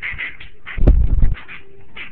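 A loud, low thud with a rumble, about half a second long, about a second in, ending abruptly: a knock against the phone's microphone or a body hitting the floor during rough play.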